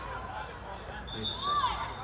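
Voices calling out across a football pitch during a youth match, with one shout rising and falling about a second and a half in. A short, steady, high whistle blast sounds from about a second in.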